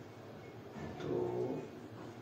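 A man's voice drawing out a single syllable, 'to', for under a second, the hesitation sound of someone thinking over a sum.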